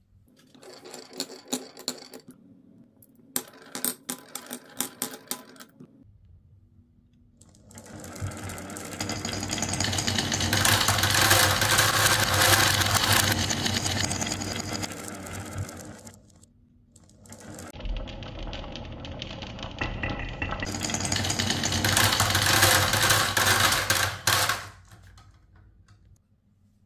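Glass marbles rolling in a long train through the wavy grooves of wooden marble-run blocks: a dense, continuous rattling clatter of marbles on wood and against each other. It swells and fades twice, with a brief lull between. Before it, scattered sharp clicks of marbles knocking on the wood.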